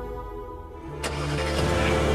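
Mercedes-Benz S-Class Cabriolet engine starting about a second in: a sharp click, then the engine catches and runs steadily, with background music underneath.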